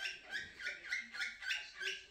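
Small pet parrot chirping: a quick, steady run of short high chirps.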